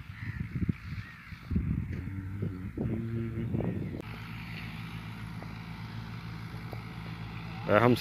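Tractor engine running steadily with a low, even hum, under the laser-levelling of the field. In the first half there are several knocks and a few short voice-like sounds over it.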